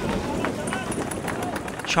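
A group of men's voices talking and calling over one another during an outdoor warm-up, with a steady background hiss.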